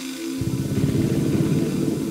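Modular synthesizer playing held tones, then, about half a second in, a loud, rough, rapidly stuttering low buzz that takes over as the loudest sound for the rest of the moment.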